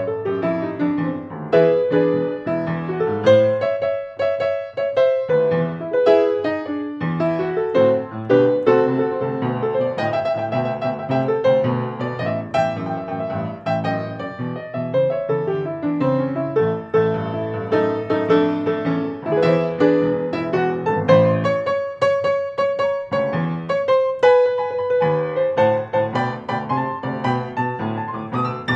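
Acoustic grand piano playing a solo instrumental passage in an eight-bar blues, struck chords under a melody in the upper notes.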